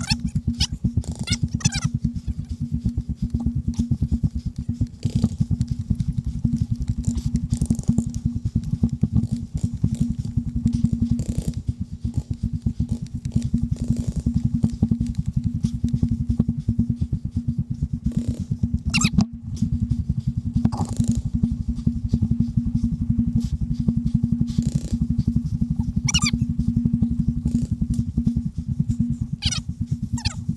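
Steady, fluttering low rumble of wind and handling noise on a helmet-mounted GoPro as its wearer moves on foot across open ground, broken by a few brief, wavering high squeaks.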